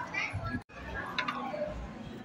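Background chatter of many people's voices in a hall, with no one voice standing out. The sound cuts out for an instant about a third of the way in.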